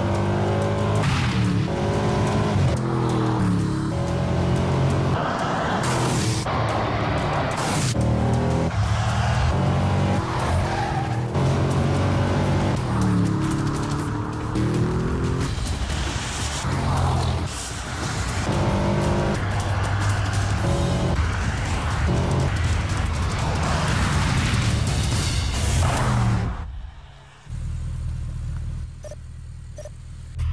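Bentley Continental V8's engine accelerating hard, its note rising and dropping back again and again as it shifts through the gears, mixed with background music. About 27 seconds in it falls away, and a lower, steadier engine note follows.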